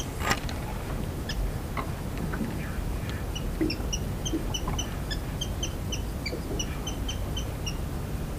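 A small bird repeating short, high chirps, roughly four a second, through the second half, over a steady low rumble; a single sharp click comes just after the start.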